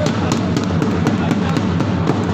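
Music with a fast, steady drumbeat.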